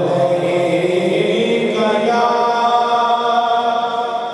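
A man's unaccompanied devotional chanting, amplified through a microphone and PA. He sustains long, steady notes, and a new held note begins about two seconds in.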